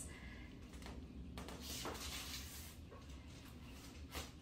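Quiet treatment room with a steady low hum and faint, soft rustling of hands and clothing as the chiropractor positions the patient's head for a neck adjustment.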